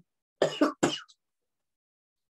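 A man clearing his throat in two quick, harsh bursts about half a second in.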